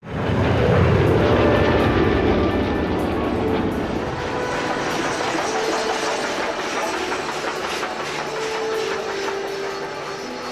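Two P-47 Thunderbolt propeller fighters' radial engines passing low, loudest in the first few seconds, then a steam locomotive running by.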